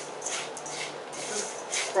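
Gloved hands squeezing and mixing crushed vanilla wafers with melted butter in a stainless steel bowl: a run of soft crunching, rustling strokes, a few a second.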